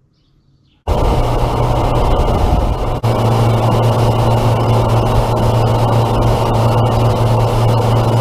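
Outboard motor running at speed on a small fishing boat: a steady low engine drone under the rush of spray and wind. It starts suddenly about a second in, with a brief dropout about three seconds in.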